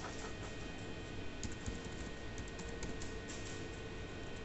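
Keys clicking on an ultrasound machine's keyboard as a text label is typed onto the scan image: a few clicks at the start, then a quick run of clicks from about a second and a half in, over a steady background hum.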